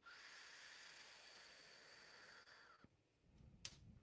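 Near silence: a faint steady hiss that cuts off about three seconds in, followed by a soft click.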